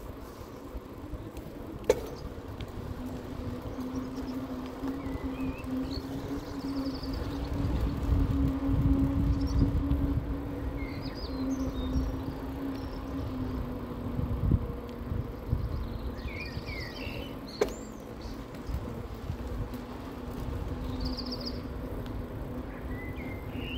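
Electric bike motor humming steadily as the bike rides along, with wind rumbling on the microphone, loudest about a third of the way in. Birds chirp at intervals, and there are two sharp clicks, one about two seconds in and one near the end.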